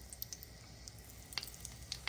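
Breaded stuffed mushroom caps frying in hot clarified butter: a faint sizzle with a few sharp pops, the clearest about one and a half seconds in.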